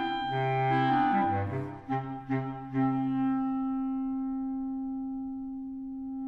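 Clarinet quartet of three B-flat clarinets and bass clarinet playing a passage of moving, partly detached notes. About three seconds in it settles onto one long held note that slowly fades, with the bass clarinet dropping out.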